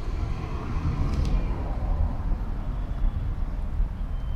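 Steady low outdoor background rumble with no clear single source.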